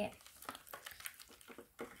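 Plastic spoon stirring a thick powder-and-water paste in a plastic tray, with small irregular scrapes and clicks.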